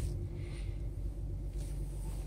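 2017 Lexus GS 350 F Sport's 3.5-litre V6 running at low speed as the car is moved slowly, a steady low hum heard from inside the cabin.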